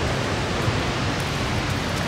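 Steady rushing roar of the Dunhinda waterfall heard across the valley.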